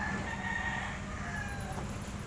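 A rooster crowing: one long, drawn-out crow that fades out after about a second and a half.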